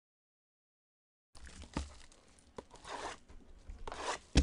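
Plastic wrapping being torn and crinkled off a trading-card box, starting after about a second of dead silence, with a sharp crackle a little later.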